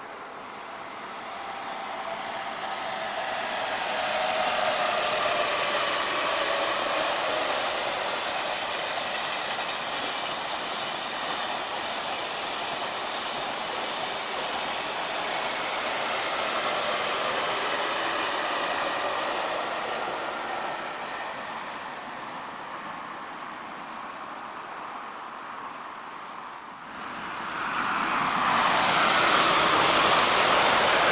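A KTX high-speed train passing along the elevated line: a rushing noise that swells over the first few seconds, holds, then fades away. Near the end a sudden, louder rush of noise starts.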